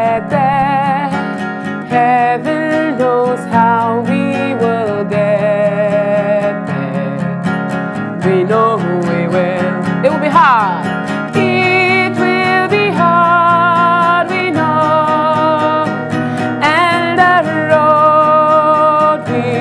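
A woman singing live with strong vibrato while strumming an acoustic guitar. A brief rising sweep comes about ten seconds in.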